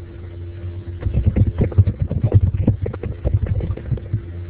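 A rapid, irregular run of low knocks and thumps over a steady low hum, with no speech.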